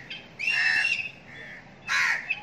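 Crows cawing: one loud caw about half a second in, a fainter short call after it, and another caw starting near the end.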